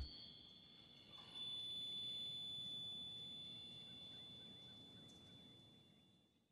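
Near silence after the song ends. About a second in, a faint steady high-pitched tone comes in with a little hiss, then slowly fades away.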